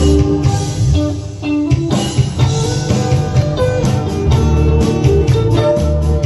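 A live band plays an instrumental passage through amplifiers: electric and acoustic guitars over a steady beat. The music dips briefly about a second in, then comes back fuller.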